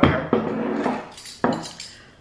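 A few sharp clinks and knocks of small glass jam jars and metal cutlery being handled on a table.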